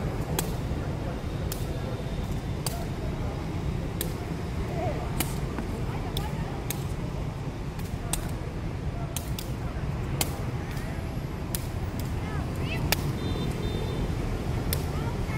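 A feathered shuttlecock (đá cầu) being kicked back and forth between two players: sharp taps, roughly one a second, over a steady low background rumble.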